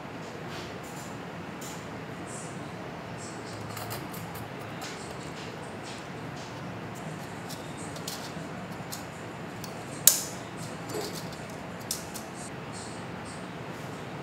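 Small metallic clicks and taps as a Noctua NH-D15S tower CPU air cooler and its mounting hardware are handled and fitted into a PC case, with one sharp, louder click about ten seconds in and a couple of lighter ones after it. A steady background noise runs underneath.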